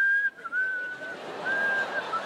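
A man whistling one high, steady note, held for about a second, broken off and taken up again in short bits, as if whistling innocently. Audience laughter rises underneath from about half a second in.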